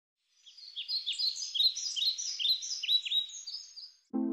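Birds chirping: a quick run of short, high chirps, several a second, fading out just before the end.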